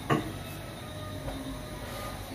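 Steady low background noise in a pause between speech (room tone), with one brief short sound just after the start.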